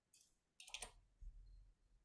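A few faint computer mouse clicks against near silence, made while scrolling back through a chat. The loudest click comes just under a second in.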